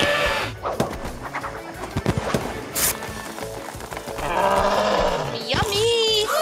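Cartoon soundtrack heard through a video call: background music with a cartoon dinosaur's cries and a few sharp knocks.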